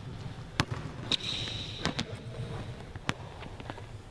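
Basketball bouncing on a hardwood court in a large gym: several separate, irregularly spaced bounces. There is a brief high squeak, sneakers on the floor, about a second in.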